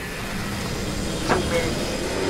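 Soundtrack of the animated episode: a steady deep rumbling roar with a hiss over it, and a brief sharp sound with a falling tail a little over a second in.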